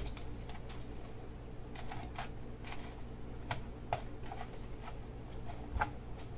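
Light clicks and scrapes of hands working the last bolt through the rubber seal into a sump pump cover: a few scattered small taps over a steady low hum.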